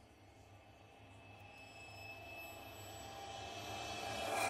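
Outro logo sound effect: a soft, swelling riser with a few sustained tones, growing steadily louder.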